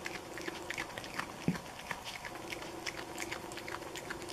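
Opossum chewing and crunching a hard taco shell: an irregular run of small, quick crunches and smacks, over a faint steady hum.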